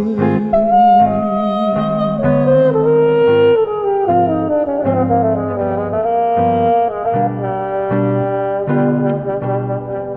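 Instrumental break in a jazz vocal-standard arrangement: a solo horn plays a melody line that slides up and down over bass and band accompaniment.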